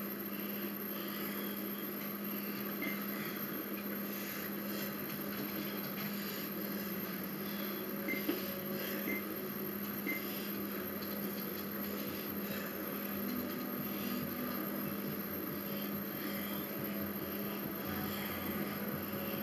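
Exercise bike being pedaled steadily: a constant whirring hum with a few faint clicks.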